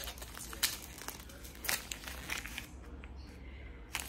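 Gift wrapping crinkling and tearing as a tightly wrapped small gift is pulled open by hand, with scattered sharp crackles that thin out after about two and a half seconds.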